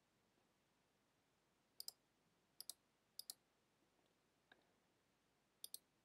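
Computer mouse clicking over near silence: four pairs of quick, sharp clicks, each pair a fraction of a second apart, with one fainter single click between them.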